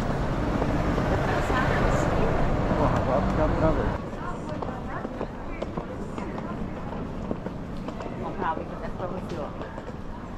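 Busy city street ambience: a low vehicle engine rumble and the voices of passers-by, louder for the first four seconds. It then drops suddenly to quieter street noise with scattered voices.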